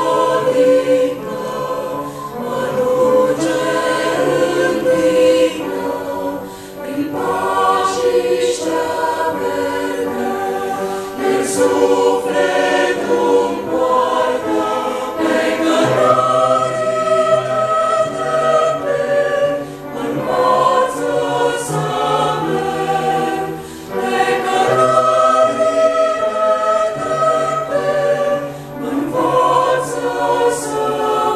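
A choir singing a Christian religious song in several voice parts, low and high voices together, in long held phrases with short breaths between them.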